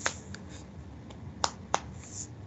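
Four short, sharp clicks or snaps in two pairs, the clicks of each pair about a third of a second apart. The first pair comes right at the start and the second about a second and a half in.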